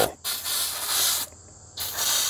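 Aerosol can of Frost King foaming coil cleaner spraying in two hissing bursts: one of about a second, a short pause, then a second burst starting near the end.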